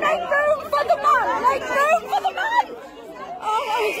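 Several people talking over one another, a tangle of overlapping voices with no single clear speaker.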